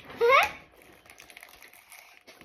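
A child's short rising squeal about a quarter second in, then faint scattered taps and crinkles of hands handling cardboard toy-kit boxes.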